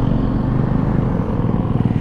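A vehicle engine running steadily at low revs, an even pulsing drone that holds at the same level throughout.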